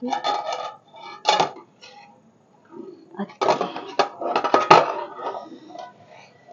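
A metal plate lid clattering and scraping against an iron kadhai as it is handled and lifted. There is a cluster of clinks in the first second, a single knock a little later, and a longer run of clatter from about three and a half to five seconds in, with a brief metallic ring at the end.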